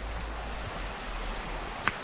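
Small woodland stream running over stones: a steady rushing hiss with a low rumble underneath, and a single short click near the end.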